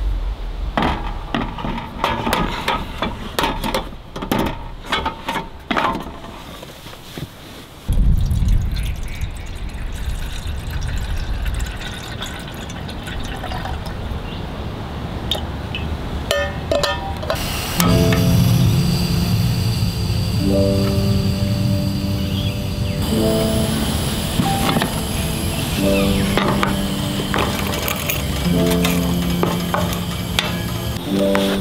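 Sharp metal clicks and knocks as a gas stove unit is fitted into a camp table, then water poured from an insulated bottle into a kettle. Over the second half, background piano music with slow held chords takes over.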